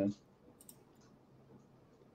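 The last syllable of a spoken word, then near silence with a few faint, short clicks about half a second in.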